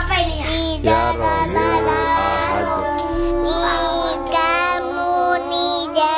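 A child's voice singing held, melodic notes over steady musical accompaniment.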